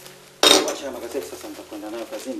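A china teacup set down on a table, one sharp clink with a brief ring about half a second in.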